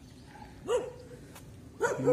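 A dog barks once, a short single bark less than a second in.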